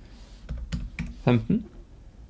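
A few sharp clicks of a computer keyboard and mouse as a dimension value is entered, with a short spoken sound a little past halfway through.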